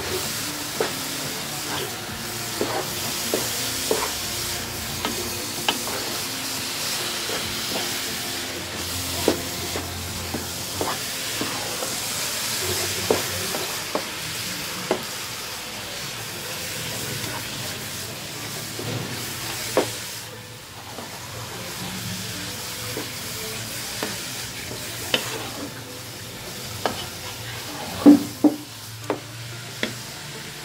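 Wooden spoon stirring and scraping grated carrot halwa as it fries in ghee in a pot, a steady sizzle under frequent short knocks of the spoon against the pot. The loudest knocks come near the end.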